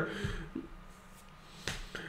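A pause between spoken sentences: faint room tone, with one short, sharp click near the end.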